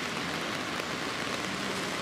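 Steady hiss of heavy rain falling on a wet street.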